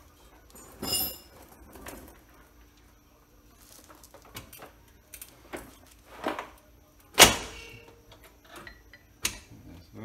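Scattered metal clinks and knocks from the car's lower frame member and hand tools as it is worked free: a ringing clink about a second in, and the loudest, a sharp clank with a short ring, about seven seconds in.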